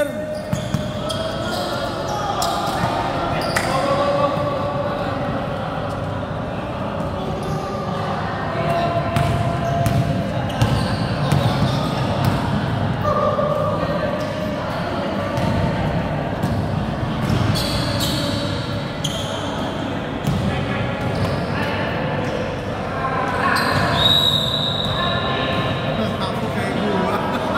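A basketball bouncing and being dribbled on an indoor court floor during a game, in short irregular thuds, in a large sports hall. Players' voices and shouts are mixed in.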